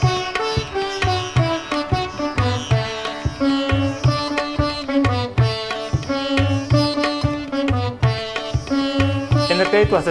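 Sitar and violin playing a Sranantongo folk melody in Indian style over a low drum beating about twice a second, in a 1974 recording that fuses Surinamese song with Indian instruments.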